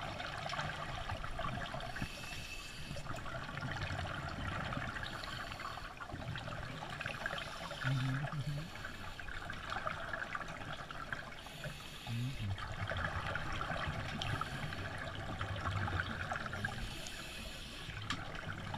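Scuba divers breathing through regulators, heard underwater: repeated rounds of hissing, bubbling breaths a few seconds each, with a short low bump about eight seconds in.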